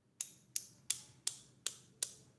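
Knife blade tapping the shell of an egg to crack it: five sharp taps, about three a second.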